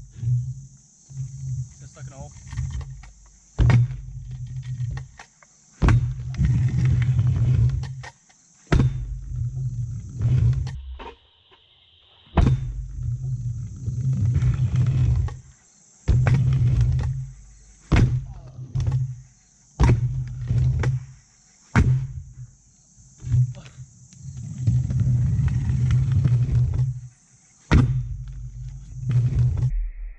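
Stunt scooter riding a ramp: repeated runs of wheel rumble, each a second or two long, broken by many sharp clacks of landings and impacts on the ramp. The back wheel is plastic. A steady high hiss sits behind most of it.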